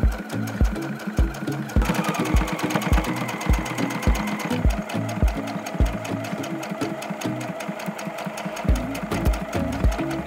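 Electric sewing machine running steadily, its needle stitching with a rapid, even clatter as it sews a curved seam through fabric and denim. Background music with a steady beat plays throughout.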